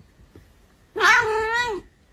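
A house cat gives one drawn-out meow about a second in, slightly wavering in pitch, complaining at being petted.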